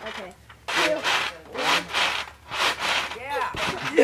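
Backyard trampoline being bounced on by two people: rhythmic rasping swishes from the mat and springs, about four bounces, one every three-quarters of a second.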